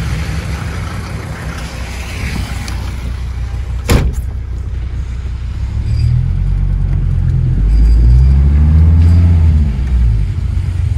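Mercedes 190 D diesel engine idling with a steady low rumble; about four seconds in a sharp knock, like the car door shutting. From about six seconds the engine is revved as the car pulls away, rising and then falling in pitch near the end, the loudest part.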